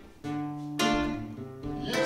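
Acoustic guitar, classical style, played solo: a run of chords struck one after another, roughly one every half second, each ringing on into the next.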